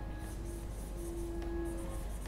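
Quiet contemporary chamber music: one soft note held at a steady pitch, stopping and starting, with short patches of high, hissy scratching noise over it.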